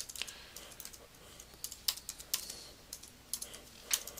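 Computer keyboard being typed on: a string of light key clicks at an uneven pace as a word is entered.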